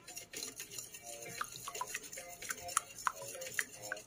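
Wire whisk beating a raw egg in a ceramic bowl, its wires ticking irregularly against the bowl's sides, several clicks a second.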